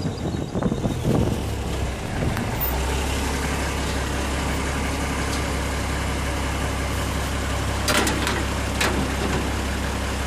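Pickup truck engine running at low speed, heard from the open tray. It settles into a steady low drone about two and a half seconds in. Two sharp knocks or rattles come near the end.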